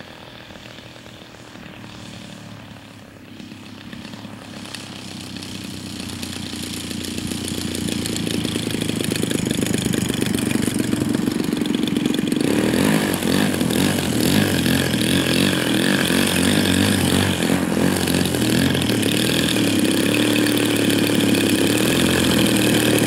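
DLE 111 twin-cylinder two-stroke gasoline engine of a one-third-scale Cub model plane running at low throttle, growing steadily louder over about ten seconds as the model lands and taxis closer. It then runs loud and steady, turning suddenly brighter and sharper about twelve seconds in.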